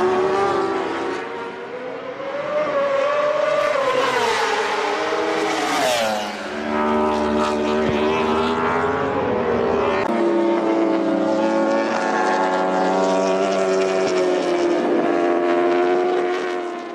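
Racing motorcycle engines at high revs, their pitch rising and falling in the first few seconds. Near the middle there is a short burst of noise, and after that several bikes hold a steady, many-toned note to the end.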